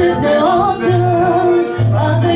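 Gospel band playing live: a singer's voice carrying a melody over keyboard, electric bass, drums and guitar.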